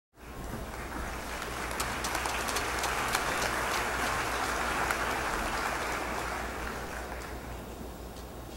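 Audience applauding: many hands clapping, swelling over the first few seconds and easing off toward the end.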